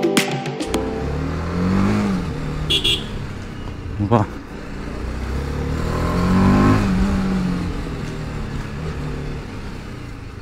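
BMW G310RR single-cylinder engine under way at low speed, its pitch rising as the throttle opens and falling as it eases off, twice.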